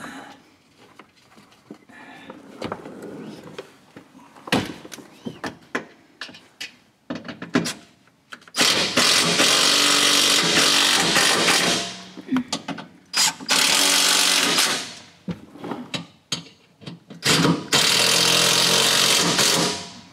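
Cordless driver running in three bursts of about two to three seconds each, driving T45 Torx bolts into a plastic engine undercover. Before the bursts come scattered light clicks and taps.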